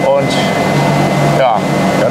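Steady low machine hum, with a faint high steady tone over it and brief bits of a man's voice near the start and about a second and a half in.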